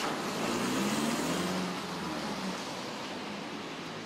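A Toyota HiAce van driving past on a wet street, its engine hum and tyre noise swelling about a second in and then fading, over steady city traffic noise.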